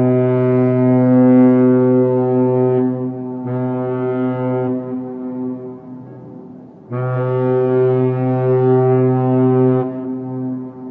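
Cruise ship's horn sounding in long, low, steady blasts: one that ends about three seconds in, a shorter one around four seconds, and another long blast starting about seven seconds in and stopping near the end.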